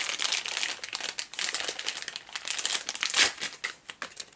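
Clear plastic packaging bag crinkling irregularly as it is handled and a small capacitor pack is taken out of it.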